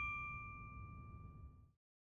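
Ringing tail of a single bell-like ding sound effect, its clear tone fading out within about a second and a half over a low rumble that fades with it.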